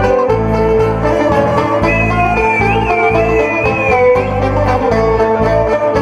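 Live Greek folk band playing an instrumental break between sung verses: strummed acoustic guitar and a plucked long-necked lute over steady bass notes, with violin. A high, wavering melody line sings out in the middle.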